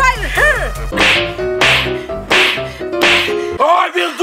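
A series of four short, hissing whip-crack sound effects, each a half second to a second after the last, laid over action-style background music. There is shouting just at the start and again near the end.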